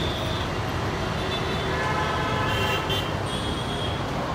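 Street traffic noise, a steady low rumble, with a faint vehicle horn sounding briefly about two seconds in.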